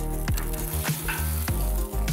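Scallops in melting butter sizzling in their shells on an electric grill, under background music with steady held notes.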